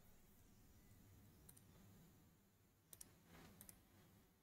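Near silence, with a few faint computer mouse clicks: one about one and a half seconds in, then two pairs near the end.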